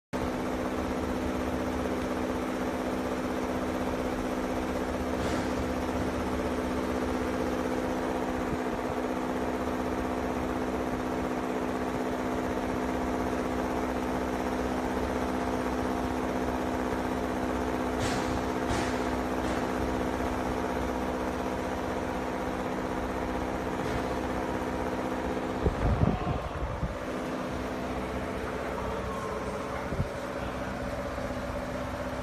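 Steady electric machinery hum made of several even tones, running throughout. A few short clicks come about 18 seconds in. A brief louder rumble with knocks comes about 26 seconds in, after which the hum's pitch shifts slightly.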